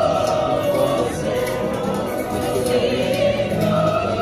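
A choir singing slow, long-held notes, with a vibrato line rising above the rest around three seconds in.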